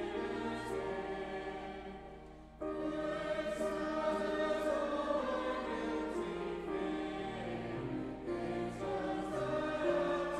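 A congregation singing a hymn together in held, steady notes. The singing dies away about two seconds in and comes back in sharply half a second later as the next line begins.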